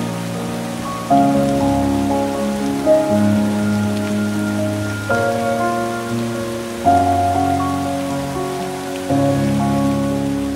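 Calm background music of slow, held chords that change every two seconds or so, each new chord starting with a soft strike, over a steady rain-like hiss.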